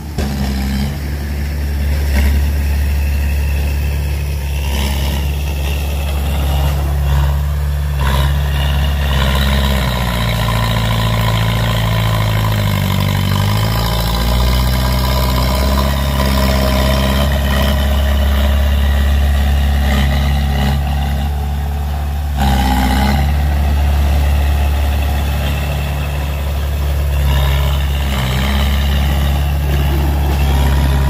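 Heavy-vehicle engine sound running steadily, its pitch wavering and rising for a few seconds around the middle, as if revving.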